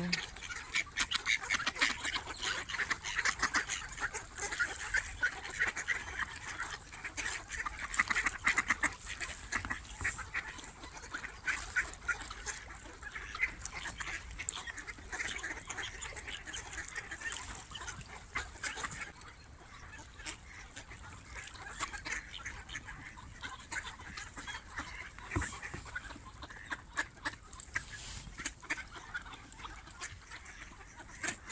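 A large flock of mallards on the water calling, a dense chatter of many overlapping quacks that thins out and grows quieter after about twenty seconds.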